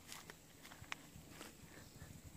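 Near silence: faint outdoor ambience with a few soft clicks, the sharpest a little before a second in.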